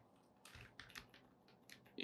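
A few faint keystrokes on a computer keyboard, soft separate clicks while a name is typed.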